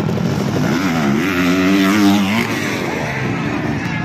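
Enduro dirt bike engine revving: the note dips, climbs and holds steady for about a second, then falls away.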